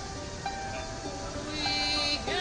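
A woman singing slow, long-held notes to her own small-harp accompaniment. A louder held note begins about three-quarters of the way through.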